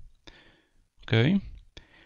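A man's voice says "Ok" once, about a second in, with faint breath noise and a few soft clicks around it.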